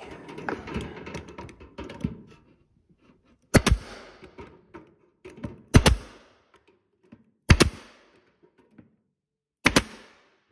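Arrow staple gun driving staples to fix wire mesh into a wooden frame: four sharp shots about two seconds apart, the last a quick double, after a couple of seconds of rustling handling noise.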